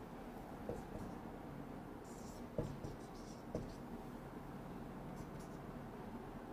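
Felt-tip marker drawing on a whiteboard: a few short, faint scratchy strokes, with three light knocks in the first half.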